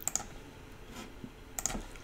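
A few faint clicks from a computer keyboard and mouse: some right at the start, one about a second in and a quick pair near the end.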